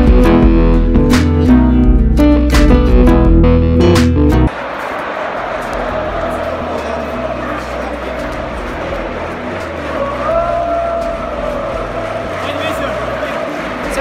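Guitar and bass music that cuts off abruptly about four seconds in, giving way to the steady noise of a large crowd in a football stadium, with a few held calls rising over it near the middle.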